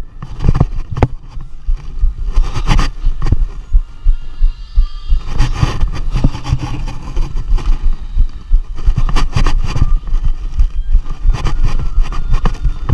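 Wind buffeting and irregular knocks and thumps on a camera mounted on a tuba, as the player moves quickly across the field.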